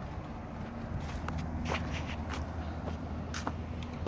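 Footsteps on pavement, a handful of short scuffs and steps, over a steady low hum.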